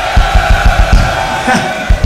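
Rock band noodling on stage between songs: quick low drum thuds, about five a second, under a held ringing note.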